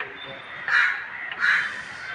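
A crow cawing twice, the two calls less than a second apart.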